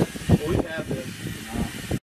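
Speech: a person talking indistinctly over a steady hiss.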